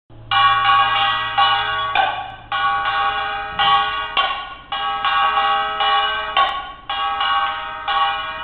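Metal percussion from a samulnori ensemble, most like a small brass hand gong (kkwaenggwari), struck in a quick steady rhythm and ringing between strokes. A heavier accented stroke comes about every two seconds.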